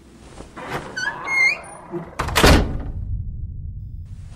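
A short run of rising creaks, then a heavy thud a little past halfway, followed by a faint low hum.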